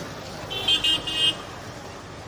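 A vehicle horn honking three short beeps in quick succession, against street background noise.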